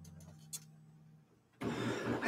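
The last low notes of an archtop jazz guitar ringing out and fading away, with a small click about half a second in. Near silence follows, and a soft noise comes in near the end.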